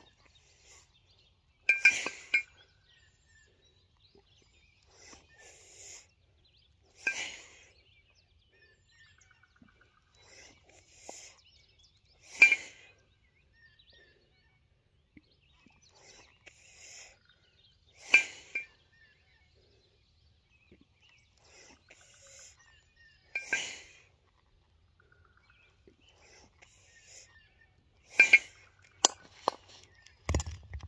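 A pair of 16 kg steel competition kettlebells clinking against each other once per jerk repetition, six sharp metallic clinks about five seconds apart. Near the end several quicker clinks and knocks come as the bells are lowered to the ground.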